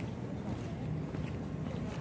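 Wind buffeting a handheld phone's microphone: a steady low rumble.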